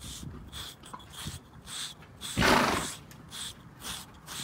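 A Slick 'n Easy pumice-type grooming block scraping through a horse's shedding winter coat in short, raspy strokes, a few a second. A little past the middle the horse snorts once, a loud noisy blow about half a second long.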